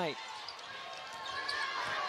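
Arena crowd noise under a basketball being dribbled on a hardwood court during play.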